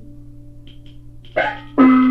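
Taiwanese opera (gezaixi) instrumental accompaniment starting up on an old radio recording. After a faint steady hum, a single note sounds about 1.4 s in and fades. Near the end the band comes in loudly, with a held low tone and a regular pulse.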